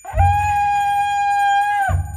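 Live free-improvised jazz trio: one long, steady high note on a small hand-held wind instrument, with a low rumble from the bass and drums under it. Both cut off together just before the end.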